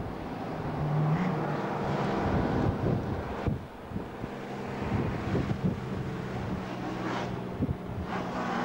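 Stock car engine running as the car laps a dirt speedway track, heard from trackside as a steady engine hum. Wind buffets the microphone in irregular thumps.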